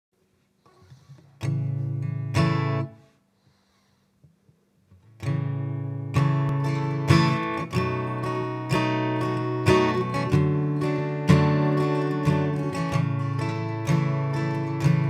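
Acoustic guitar strummed: two chords about a second apart near the start, a pause of about two seconds, then a steady strummed rhythm from about five seconds in, with an accented strum roughly once a second.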